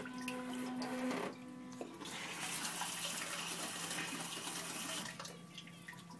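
Water from a Japanese electronic bidet toilet's wash nozzle spraying, with a steady low electric hum. The spray dips briefly after about a second and drops off near the end.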